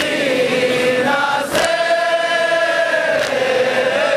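Crowd of men chanting a mourning lament (noha) together in a long, slowly falling and rising line. Collective chest-beating (matam) slaps land in unison about every second and a half.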